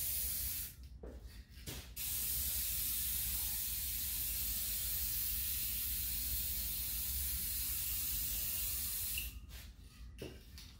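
Aerosol can of hydro dipping activator spraying in a steady hiss over the film in the dip tank, activating it. The spray breaks off for about a second near the start, then runs again until shortly before the end.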